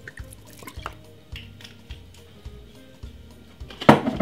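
Soy sauce dripping and splashing from a bottle onto lamb and chopped vegetables in a plastic bowl, heard faintly over soft background music with a steady beat. A sharp knock just before the end.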